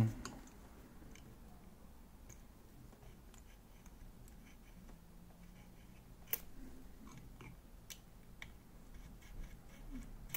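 Faint, sparse metallic clicks and light scrapes of hand work on a motorcycle carburettor bank: a feeler gauge is slid into the throttle butterfly's gap to check it for synchronisation. A sharper click comes about six seconds in.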